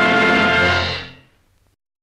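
Orchestral film score holding a final chord that fades out about a second in, then silence.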